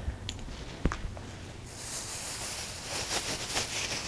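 Two light knocks in the first second, then from about two seconds in a crackling rustle of cloth as bed linen is handled and gathered up.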